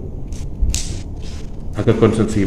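A pause in a man's speech, filled by a steady low background rumble and a short hiss a little before the middle.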